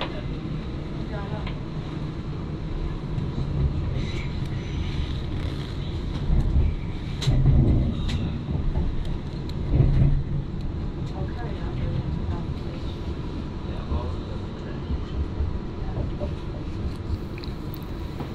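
Steady low rumble of a passenger train running on the rails, heard from inside the carriage, swelling louder for a few seconds around a third of the way in and again just past halfway.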